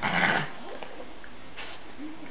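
A Boston terrier and an American hairless terrier play-fighting: a loud, noisy dog vocalisation right at the start and a shorter, fainter one near the end.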